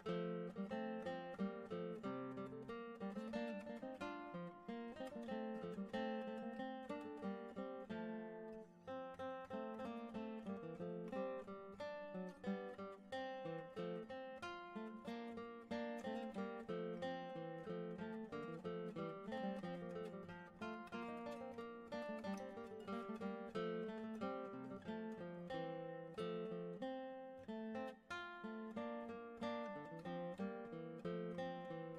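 Background music: a solo acoustic guitar playing an early-music piece as a continuous run of plucked notes.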